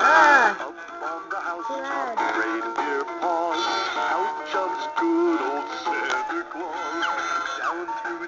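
Animated dancing Santa Claus figure playing its built-in recorded song, a male singing voice over a backing tune, through its small speaker.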